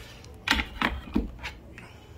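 Four short knocks and clicks from handling, about a third of a second apart.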